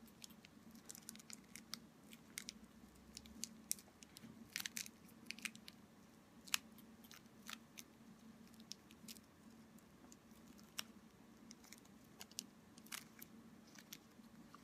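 Faint crinkling and small scattered clicks of a thin piece of plastic being folded and pinched by hand around a bent paper-clip frame, a little busier about four to five seconds in, over a low steady hum.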